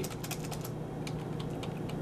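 Computer keyboard keys being tapped: a quick run of light clicks, then a few scattered ones.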